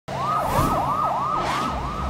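Emergency vehicle siren in a fast yelp, its pitch rising and falling about three times a second.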